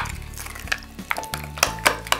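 A metal spoon stirring a thick sauce in a small glass bowl, clinking sharply against the glass several times, over background music.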